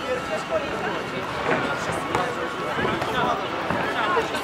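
Players and spectators calling out during an outdoor football game, with a few short thuds of the ball being kicked.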